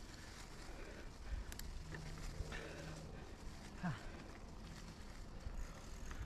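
Mountain bike rolling along a leaf-covered dirt trail: a steady low rumble of tyre noise and wind on the mic, with scattered clicks and rattles from the bike.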